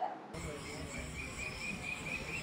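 Outdoor background with a steady low rumble and a rapid, regular run of high chirps, about four a second, typical of a cricket.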